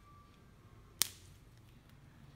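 A fresh green bean snapping once, sharp and crisp, about a second in.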